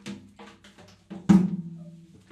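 Handling noise: a run of small knocks and clatter, then a loud thump a little past the middle that leaves a low ringing tone.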